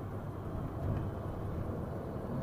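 Steady low rumble of a moving bus heard from inside the cabin: engine and road noise while driving.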